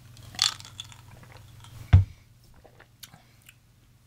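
A person sipping a cocktail from a glass: a short slurp about half a second in, then a single sharp thump just before two seconds, followed by faint mouth sounds.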